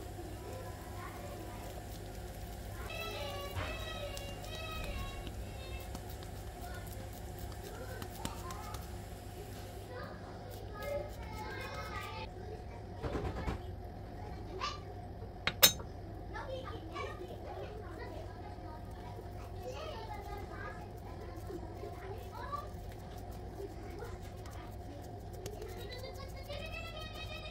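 Faint children's voices, chattering and calling out intermittently, with a single sharp click about fifteen seconds in.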